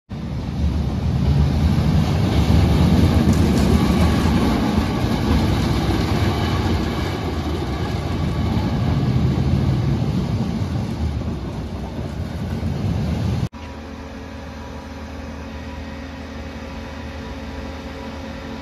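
A Boomerang shuttle roller coaster's train rumbling along its steel track, loud and rising and falling. About thirteen seconds in, the sound cuts off abruptly to a quieter steady hum with a few steady tones, while the train is hauled up the tall lift spike.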